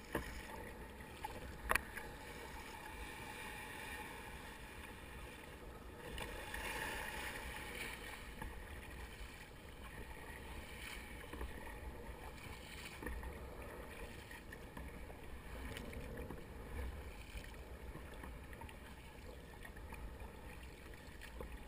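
Sea water splashing and lapping around a plastic sit-on-top kayak as the paddle blades dip in stroke after stroke, over a steady rush of wind and water. A single sharp knock sounds about two seconds in.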